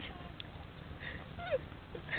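A domestic goose giving a brief, faint call that falls in pitch about one and a half seconds in.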